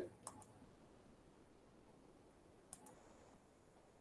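Near silence broken by a few short clicks: one just after the start and a pair close together about three seconds in.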